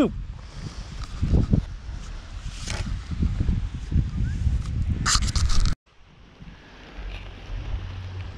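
Wind buffeting the microphone, with a few short scrapes and rattles from the sand scoop. The sound cuts off abruptly about six seconds in, giving way to a quieter steady low hum.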